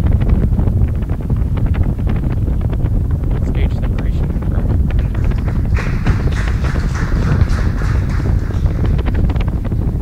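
Wind buffeting the microphone as a steady low rumble. About six seconds in, a stretch of hissing, crackly noise rises over it for two to three seconds.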